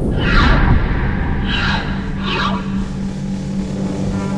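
Soundtrack sound design for animated graphics: three short airy whooshes within the first two and a half seconds, over a low rumble, with a steady low drone coming in about a second and a half in.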